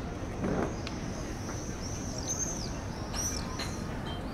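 Birds calling overhead with many short, high, arching chirps in quick succession, over a steady background of town ambience.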